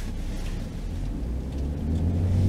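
Low, steady engine and road drone heard inside the cabin of a 2016 BMW X5 xDrive35i, its 3-litre single twin-scroll turbocharged six running in sport mode, swelling near the end.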